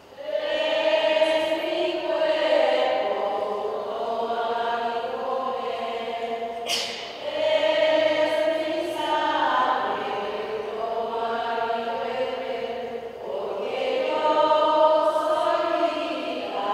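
Voices singing a slow Spanish communion hymn, long held phrases with short breaks about seven and thirteen seconds in.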